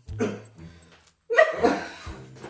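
Two short bursts of a person's laughter, the first a quarter second in and a louder one just past halfway, over a low steady bass tone.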